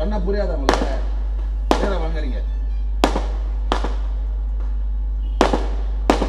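Firecrackers going off one at a time at irregular intervals, about one sharp bang a second, each with a short echoing tail, over a steady low hum.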